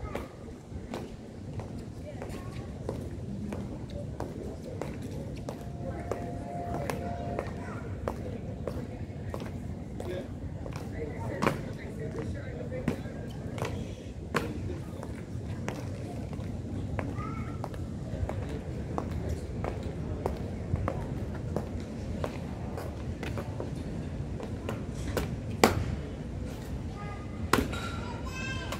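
Sentry's hobnailed boots striking stone flagstones in a marching rhythm, with two louder single strikes, one about a third of the way in and one near the end. Tourists talk in the background.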